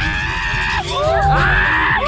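Riders screaming on a Tagada fairground ride: two long, high screams over loud ride music with a heavy bass beat, with shorter yells around them.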